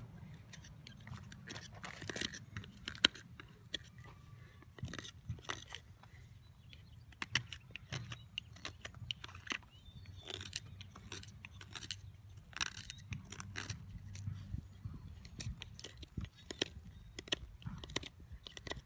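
Hook knife shaving wood out of a carved spoon's bowl: short, irregular scraping cuts and light clicks of the blade, with a sharper click about three seconds in. A steady low hum runs underneath.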